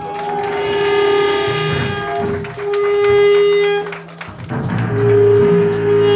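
Amplified electric guitar and bass holding long ringing notes with no drums, loud throughout; the notes break off about four seconds in and start again about a second later.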